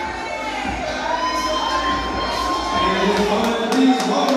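A small crowd cheering and shouting at a weigh-in, with one long held whoop through the middle.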